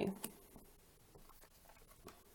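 Faint rustling and a few light ticks of tarot cards being handled and shifted between the hands, just after a last word trails off at the very start.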